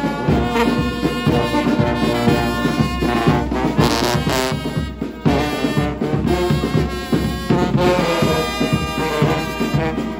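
Marching brass band of euphoniums, tenor horns and other brass playing a tune together in harmony.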